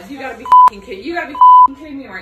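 Two loud censor bleeps, each a steady single tone lasting a fraction of a second and about a second apart, cutting into speech to cover swear words.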